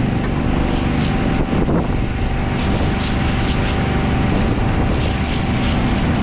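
Fire truck's engine and pump running steadily, with a thin steady whine, while a water stream sprays onto burning grass; wind rushes over the microphone.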